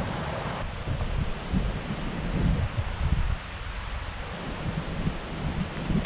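Wind buffeting the microphone, an uneven low rumble that comes and goes over a steady hiss.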